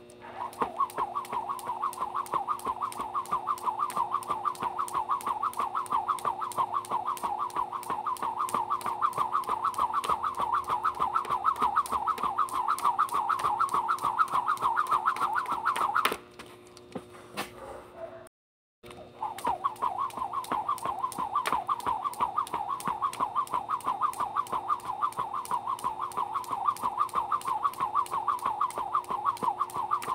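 A jump rope being skipped at a steady pace, the rope whirring and slapping the ground on every turn over a faint steady hum. The skipping stops for a couple of seconds a little past the middle, then picks up again at the same rhythm.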